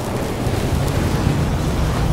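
Cinematic sound-effect rumble from an animated logo intro: a deep, steady rumble with a hiss over it, building slightly toward the end.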